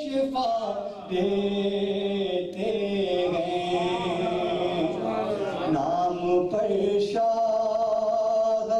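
A man's voice chanting in long, drawn-out melodic phrases, the notes held and bending in pitch, with short breaks for breath between lines. It is the chanted style of recitation used to mourn Imam Hussain at a Muharram majlis.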